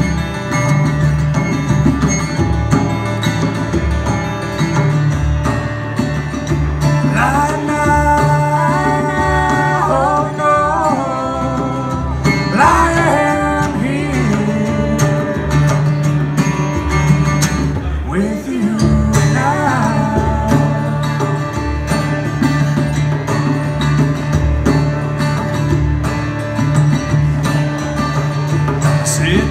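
Live acoustic band: two acoustic guitars strummed over a steady djembe beat, with a voice singing in a few short stretches.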